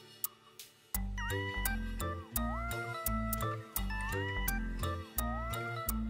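Upbeat outro music. It nearly drops out, then comes back in about a second in with a steady heavy beat and a bass line. Over it a high lead plays short phrases whose notes slide upward in pitch.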